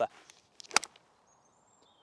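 Near-quiet pause with two or three short, sharp clicks a little under a second in, then a faint, thin, high steady whistle near the end.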